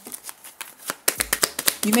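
A deck of Kipper cards handled and shuffled by hand: a quick run of soft card flicks and riffles about a second in.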